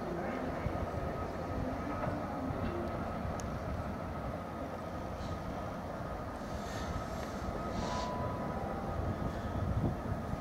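Class 66 diesel-electric locomotive approaching at low speed, its two-stroke V12 engine giving a steady, continuous rumble.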